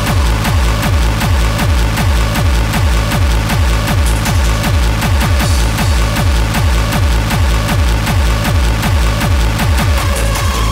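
Industrial hardcore drum & bass music: a fast, unbroken run of heavy kick drums, each falling in pitch, about four to five a second, under dense distorted noise.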